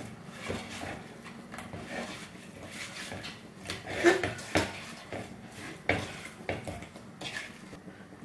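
Hands rubbing spice masala into whole sardines in an earthenware pot: soft wet squishing and scraping, with irregular light clicks and knocks against the pot, a few louder ones midway.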